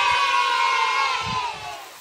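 Two children cheering a long, drawn-out "yay!", the pitch slowly falling and fading out just before the end.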